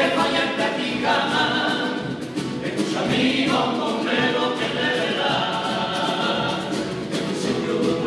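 Carnival comparsa chorus singing in several-part harmony, the voices holding long sung notes that change every second or so.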